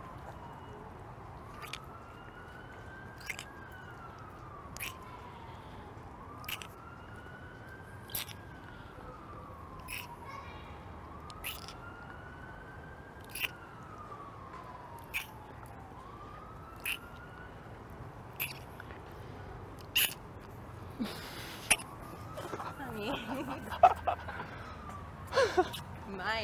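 A siren wailing faintly, its pitch rising and falling slowly and repeating about every five seconds. Sharp clicks sound about every second and a half, and faint voices come in near the end.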